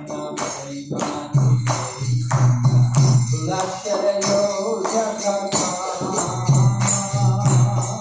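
A male voice singing a devotional chant, accompanied by steady rhythmic strikes of small hand cymbals (kartals).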